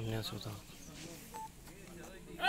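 Indistinct voices of people talking at a distance, with one short beep about a second and a half in.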